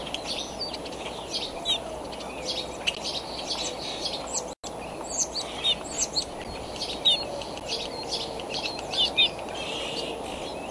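Small birds chirping and singing: many short, high, varied calls, some sliding downward, over a steady background hiss. The sound cuts out for an instant about halfway through.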